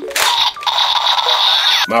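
DX Neo Diend Driver toy gun playing its electronic sound effect through its small built-in speaker. It opens with a short burst, then a thin, tinny, steady sound lasts about a second and cuts off. The toy is still working.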